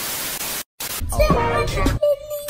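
Television static hiss for about half a second that cuts out briefly, followed from about a second in by music with a voice over it.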